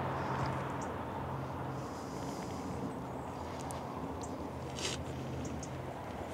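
Quiet outdoor background: a faint steady low hum under a soft hiss, with a brief light rustle about five seconds in.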